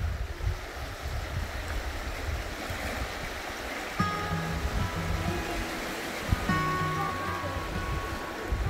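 Small sea waves washing over sand and around rocks, with a low rumble. About halfway through, gentle background music with sustained notes comes in over the surf.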